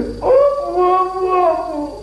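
A long howling wail on one held pitch, lasting most of two seconds and sagging slightly at the end.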